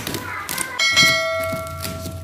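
Notification-bell sound effect from a subscribe-button animation: a bright ding that starts a little under a second in and rings on, fading away over about a second and a half.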